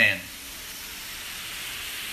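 Steady sizzling hiss of food frying in a pan on the stove.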